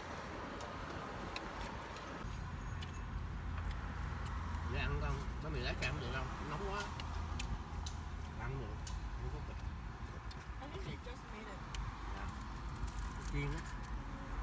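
Low steady hum of a car engine running in an open-top car, growing stronger about two seconds in, with scattered rustles and clicks from handling the paper pie box and faint murmured voices.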